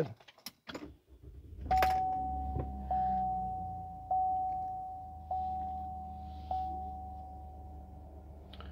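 The 3.6-litre V6 of a 2022 GMC Canyon AT4 starting about two seconds in and settling into a low, steady idle. Over it a dashboard warning chime dings five times, about once every 1.2 seconds, fading after each ding.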